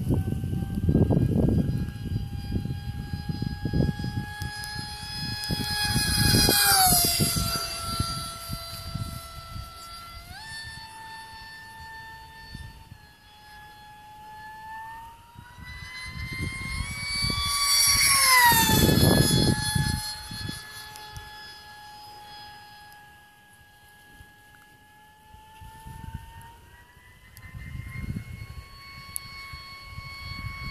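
Electric RC aircraft on a 4S LiPo battery: the high whine of its motor and propeller, passing overhead twice, with the pitch dropping sharply and the sound loudest at each pass. The pitch steps up about ten seconds in and climbs slowly near the end as the throttle is raised. Wind buffets the microphone underneath.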